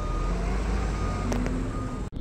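A truck's reversing alarm beeping slowly, one steady-pitched beep at the start and another near the end, over the steady low rumble of truck engines running.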